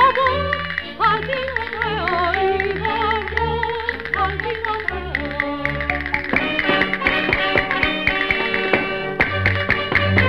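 Early 1930s gramophone recording of a Spanish folk song, its sound cut off in the treble: a woman sings with wide vibrato over piano chords. From about six seconds the voice drops out and rapid castanet clicks take over, with the piano going on beneath them.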